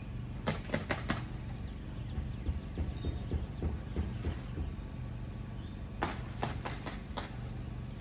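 Light clicks and taps from string being looped and tied around bamboo tomato stakes. They come in two short clusters, about half a second in and again around six to seven seconds in, over a low steady background rumble.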